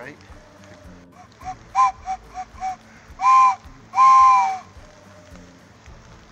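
A train whistle sounding a two-note chord: a run of short toots, then two longer, louder blasts, the last dipping slightly in pitch as it ends.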